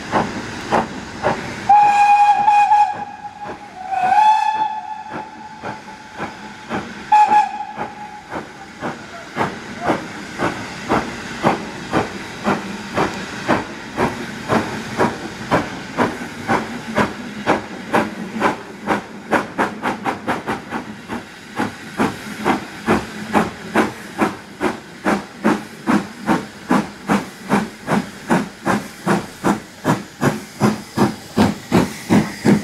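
Three blasts of a steam locomotive whistle in the first eight seconds. Then the steady exhaust beat of an approaching steam locomotive, Southern Railway Q class 0-6-0 No. 30541, at about two chuffs a second, growing louder as it nears, over a steady hiss of steam.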